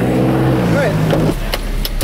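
A car's engine running with a steady hum, giving way about two-thirds of the way through to a low steady rumble of the car under way. A voice sounds briefly in the middle.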